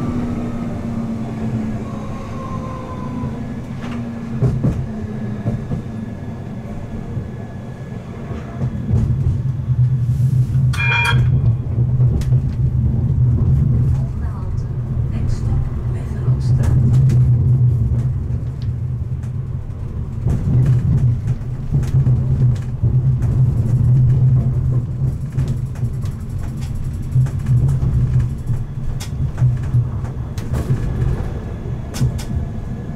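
Siemens Avenio low-floor tram running along the rail: a steady low rumble of wheels on track with the drone of the drive, getting louder from about nine seconds in, with scattered clicks of wheels over rail joints. A short, high ringing tone sounds once, about eleven seconds in.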